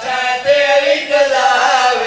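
Men's voices chanting a melodic mourning recitation into microphones, one voice leading with drawn-out, wavering notes.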